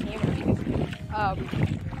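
Wind buffeting a phone's microphone, a heavy uneven rumble that rises and falls with the gusts. A voice is heard briefly about a second in.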